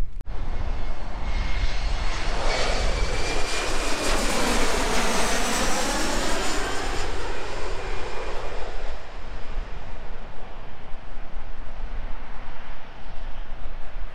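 Jet airliner flying low overhead as it comes in to land at the airport. Its engine noise swells over a few seconds and peaks near the middle with a sweeping, phasing sound and a thin high whine that slides slightly down. It fades away by about ten seconds in.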